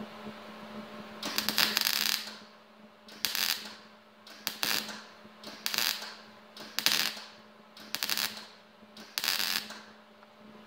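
MIG welder arc crackling in seven short bursts, about one a second, the first and longest about a second in, as weld is laid a little at a time to fill and close the tip of a steel tube. A steady low hum runs underneath.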